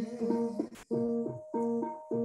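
Kirtan accompaniment: a harmonium playing a stepping melody of held notes between sung lines. The sound cuts out briefly a little under a second in.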